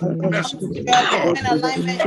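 A man's voice speaking loudly and forcefully in words that cannot be made out, with a rough, throaty rasp about a second in.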